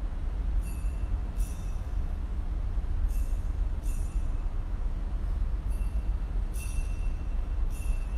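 Light metallic clinks, each ringing briefly, coming in pairs about every two and a half seconds over a steady low rumble of room noise.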